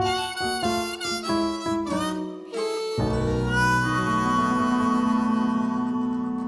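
Harmonica playing a quick run of notes over the band, then a long held chord closing the song.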